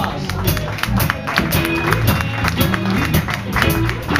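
Live blues-rock band playing: electric guitar over bass guitar and a drum kit, with cymbal strikes keeping a steady beat.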